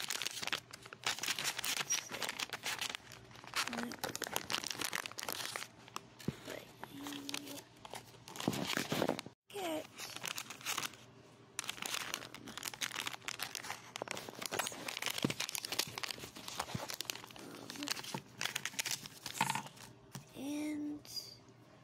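Foil blind-bag packet crinkling and tearing in irregular bursts as it is torn open and handled.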